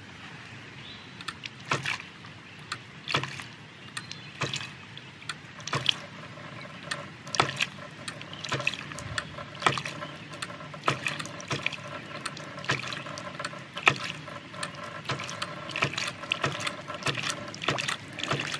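Half-inch hydraulic ram pump cycling: its waste valve clacks shut roughly every half second between spurts of water. The delivery valve is nearly shut to create artificial back pressure, and the pump is just managing to keep running.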